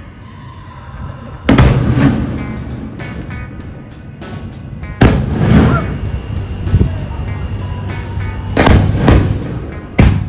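Fireworks shells bursting very close, four loud booms: one about a second and a half in, one at the halfway point, and two in quick succession near the end, each dying away.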